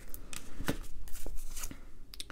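A deck of oracle cards being shuffled and handled in the hands, with several sharp card snaps and slides as a card is drawn from the deck.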